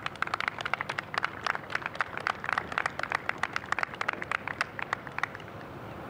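A small group applauding, separate hand claps that die away about five seconds in.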